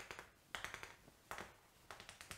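Chalk drawing short dashed lines on a chalkboard: faint quick ticks and taps in four short bursts.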